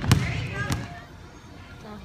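Basketball bouncing on a wooden gym floor, with a thud just after the start and another about three-quarters of a second in, over voices in the hall. After about a second the sound drops to a quieter room.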